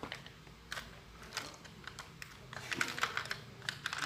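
Light, irregular clicks and taps of small hard objects being handled on a workbench, about a dozen scattered through.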